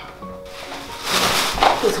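Rustling and scraping from the attic hatch as the folding wooden attic ladder is pulled down and a plastic-bagged bundle is moved, growing louder about a second in, over quiet background music.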